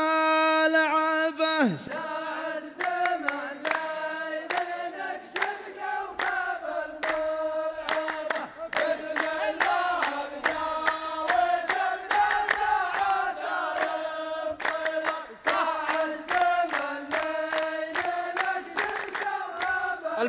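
A man's solo voice sings a long held note that falls away about two seconds in. Then a row of men sing the verse back in unison to a new, short melody, with regular handclaps in time: the call-and-response chant of Saudi muhawara poetry.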